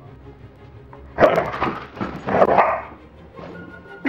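Bouvier des Flandres barking twice loudly, about a second apart, over background music.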